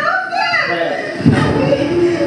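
An excited voice calling out over a microphone, loud and high-pitched. A heavy low music beat comes in a little past halfway.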